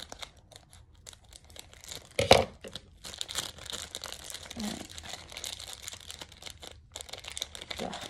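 Crinkling of a clear plastic bag and a foil Pokémon booster-pack wrapper being cut with scissors and handled, with a few light snips early on and one loud sharp crackle about two seconds in, then steady dense crinkling.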